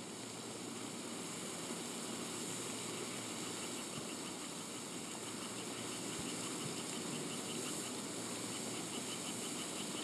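Steady outdoor ambience on a golf course: an even hiss with no distinct events. From about four seconds in, faint high insect chirps repeat at an even pace, a few a second.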